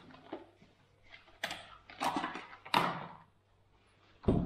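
A few short knocks and rustles of handling at a desk: a paper booklet pressed open on the tabletop and things moved about on it.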